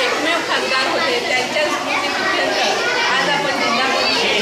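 Speech only: a woman talking with other voices chattering at the same time.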